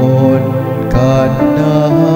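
A voice singing a Cebuano responsorial psalm over held instrumental accompaniment.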